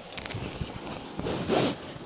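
Silk saree fabric rustling and swishing as it is unfolded and spread out by hand, with a louder swish about one and a half seconds in.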